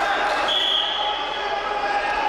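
A referee's whistle blown once, a short steady blast of about half a second, restarting the wrestling bout, over the steady chatter of voices in an arena hall.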